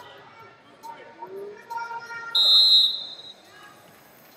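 A short, loud, high-pitched whistle blast about two and a half seconds in, held for about half a second, over scattered voices calling out in a large hall.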